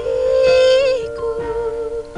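Female voice singing a held, wavering note over soft sustained accompaniment in a live acoustic pop ballad; the voice drops away and quiets about a second in while the accompaniment holds.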